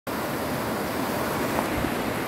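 Shallow mountain stream rushing over rocks in small rapids: a steady, even rushing noise.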